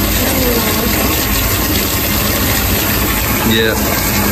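Water from a wall tap pouring into a birth pool, giving a steady, even rush.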